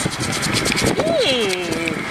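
Toothbrush bristles scrubbing dried bird droppings off a boat deck in rapid back-and-forth scratchy strokes. A voice hums a tone that slides down in pitch about a second in.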